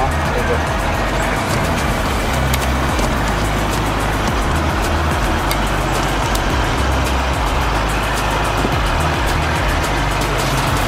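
A steady rumble of motor traffic, with background music carrying a shifting bass line under it.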